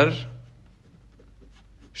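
A spoken word trails off at the start, then a ballpoint pen writes faintly on lined paper, with a few small scratches and ticks.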